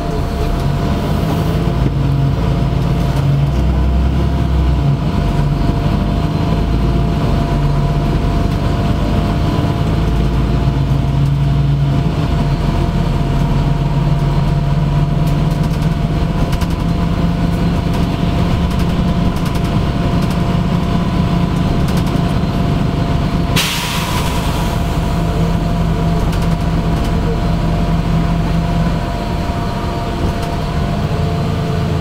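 Interior of a LiAZ-5292.65 city bus on the move: the engine runs with a low drone that shifts in pitch as the bus changes speed, under a steady whine. About three-quarters of the way through comes a short, sharp hiss of air from the bus's pneumatic brakes.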